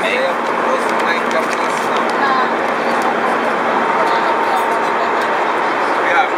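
Steady aircraft cabin noise in flight: an even, unbroken rush of engine and airflow sound with a faint steady hum.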